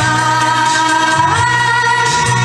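A woman singing into a handheld microphone over a backing track, holding a long note that steps up in pitch partway through.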